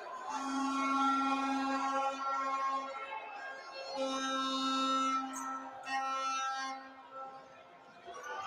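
A horn held on one steady low note in two long blasts, each ending in a couple of short toots, over the hum of an indoor crowd.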